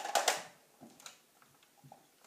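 Clicks and rattles of a plastic toy M4-style rifle being handled at its magazine release: a quick cluster of sharp clicks at the start, then a few faint ticks.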